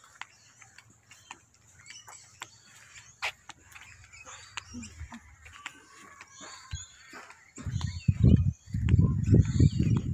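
Outdoor ambience with faint bird chirps and scattered light clicks. Near the end, loud, gusting low rumble sets in: wind buffeting a phone microphone while walking.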